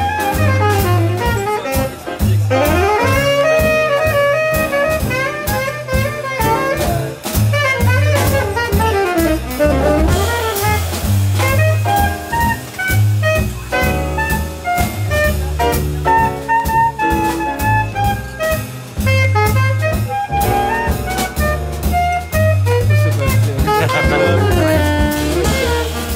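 Live jazz combo: a tenor saxophone soloing in quick rising and falling runs over upright bass, drum kit with cymbals, and piano.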